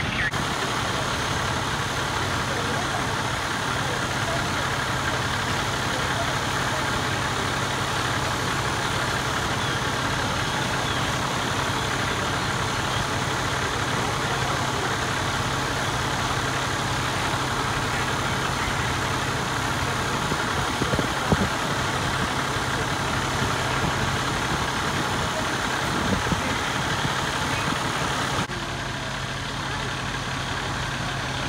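Fire truck engine idling steadily, a constant low hum under a wash of even noise, with a couple of short knocks about two-thirds of the way through.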